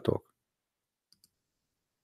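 A few faint computer mouse clicks about a second in, amid near silence.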